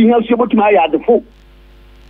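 Speech only: a voice talking for about a second, then a short pause.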